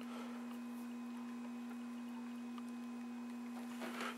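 Quiet room tone with a faint, steady low hum holding one pitch, unchanging throughout.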